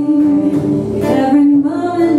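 A woman singing a held, slightly wavering melody while strumming an acoustic guitar in a live acoustic set.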